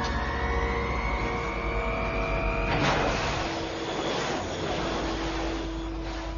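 Science-fiction sound effect of a giant humanoid robot powering up: a whine rising steadily in pitch for about three seconds, then a sudden loud rushing blast over a continuous low rumble.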